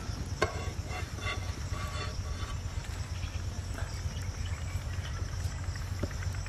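Outdoor background of a steady high insect buzz over a low steady rumble. A sharp click comes about half a second in, followed by a few light clinks over the next two seconds, as the cooked slices are handled with a spatula over the pan.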